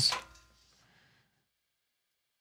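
A man's spoken word trailing off at the very start, then near silence.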